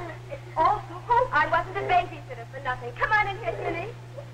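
People speaking, words indistinct, over a steady low hum.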